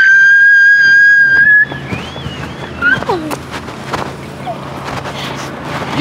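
A woman's long, high-pitched excited scream held on one pitch for about a second and a half, then shorter squeals.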